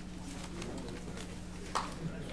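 Hearing-room ambience: a steady low hum with a few faint clicks, and one short sound about three-quarters of the way through.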